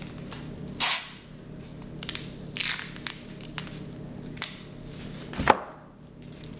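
Irregular rustling, crinkling and clicking noises over a steady low hum, with a sharp knock about five and a half seconds in.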